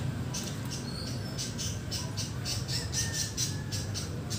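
A bird chattering: a rapid run of short, high calls that starts shortly in and speeds up to several a second, over a steady low hum.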